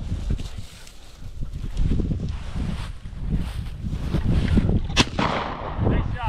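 Walking through dry, matted field grass, with rustling and wind rumbling on the microphone. A single sharp crack sounds about five seconds in.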